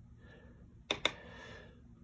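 Quiet room with two quick light clicks close together about a second in, from small objects handled on a tabletop during painting.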